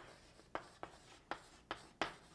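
Faint handwriting: about five short, quick scratching strokes of a pen on a writing surface.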